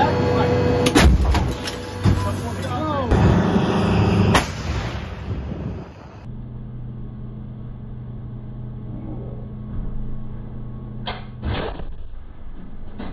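Inside an M109 Paladin self-propelled howitzer's turret: the steady hum of the vehicle's engine and hydraulics with several loud metallic clanks and bangs from the breech and loading gear, the loudest about a second in. From about six seconds a quieter, steady engine idle follows, with two clanks near the end.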